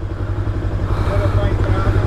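Macbor Montana XR5's parallel-twin engine idling steadily with the bike at a standstill, a low, even pulse.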